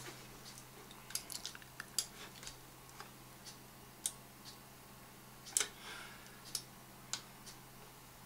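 About a dozen light, irregular clicks of a computer mouse being used to operate CAD software, over a faint steady low hum.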